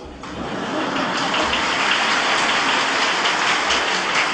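Audience applauding: a steady wash of many hands clapping that swells in over the first second and holds.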